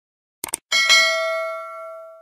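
Subscribe-button animation sound effect: a quick double mouse click, then a bright notification-bell ding that rings out and fades away over about a second and a half.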